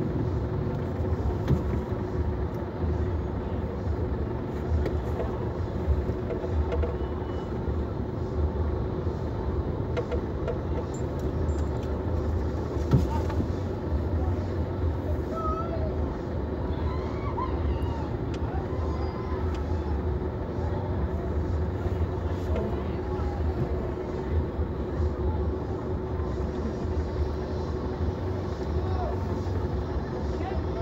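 Car cabin noise while crawling in traffic: a low, steady engine rumble with a constant hum, heard from inside the car, with faint voices from outside.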